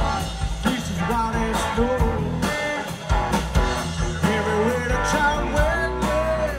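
Live blues-rock band playing amplified electric guitars, bass and drums, with a voice singing over them.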